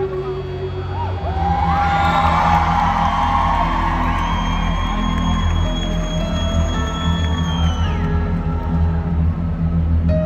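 Live concert music from the stage's sound system, loud with a heavy bass that thickens about a second in and a long held high note in the middle. A whoop from the crowd rises over it early in the song.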